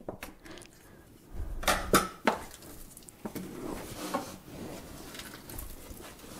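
Knife dividing sticky dough in a plastic tub: a few light clicks and knocks of the blade against the tub around two to three seconds in, over soft scraping and handling noise.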